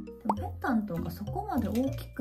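A woman talking over soft background music with sustained low notes.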